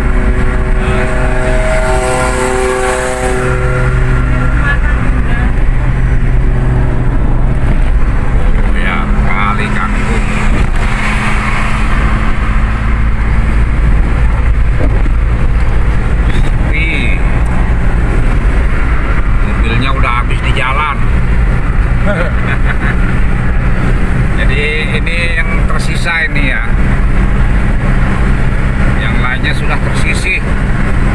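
Car interior road and engine noise while cruising at motorway speed: a steady low drone of tyres on concrete and the engine.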